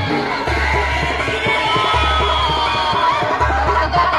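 Loud amplified devotional-style music with singing, played through horn loudspeakers, over the noise of a large crowd; a deep bass note pulses about every one and a half seconds.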